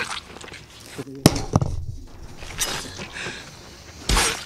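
TV drama soundtrack of men stabbing someone with knives: one sharp, loud blow about a second in, then a weaker one just after, with a man's pained voice.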